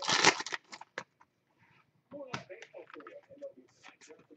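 Foil trading-card pack wrapper crinkling as it is torn open, loudest in the first half-second, followed by a couple of sharp clicks as the cards are pulled out.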